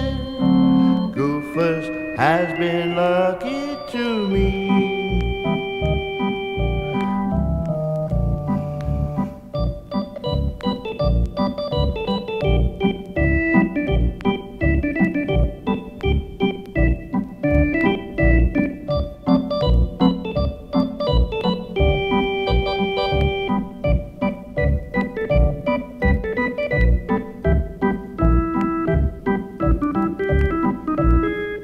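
Lounge organ music played from a vinyl LP. A few sliding, swooping notes open it, then after about four seconds the organ settles into an instrumental tune: a regular beat of bass notes under held chords and a melody line.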